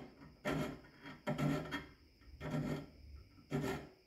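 Hand file rasping across the teeth of a shop-made dovetail cutter, in four separate strokes about a second apart, filing relief into the flutes by hand.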